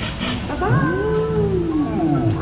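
A voice holding one long drawn-out note that rises and then falls in pitch, lasting just over a second.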